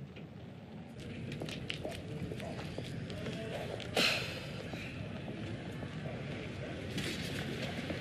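Steady low outdoor background noise, with a few faint clicks and one short sharp sound about four seconds in.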